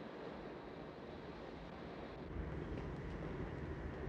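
Faint wind and sea noise on the deck of a ship under way. A low rumble grows stronger about halfway through.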